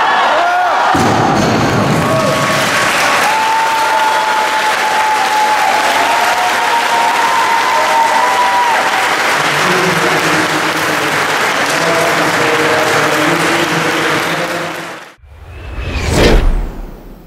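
Audience applauding in a sports hall, with voices calling out over it. About a second before the end it cuts off, and a rising whoosh swells up.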